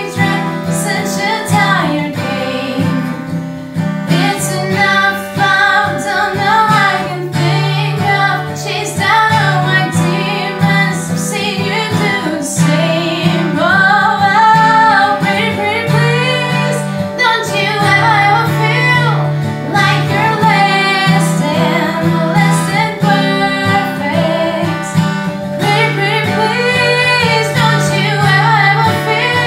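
A woman singing a pop song, accompanied by a strummed acoustic guitar.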